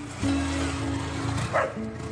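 Background music with sustained low notes, and a single dog bark about one and a half seconds in.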